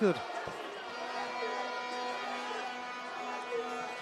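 Background music holding one steady chord from about a second in, over low arena noise.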